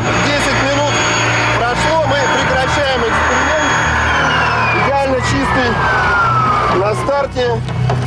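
Vacuum cleaner motor running with a steady whine and rushing air. It is switched off about four seconds in, and its whine falls steadily in pitch as it runs down.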